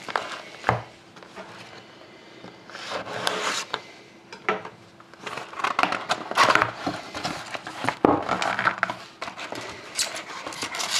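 A cardboard trading card box being handled and opened by hand: several short bursts of scuffing, tapping and scraping as the lid flap is worked loose and lifted.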